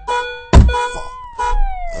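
A single loud thump about half a second in, then an emergency-vehicle siren wailing, its pitch sliding slowly down and starting back up, over short repeated beeps: a car-crash sound effect in a song's skit.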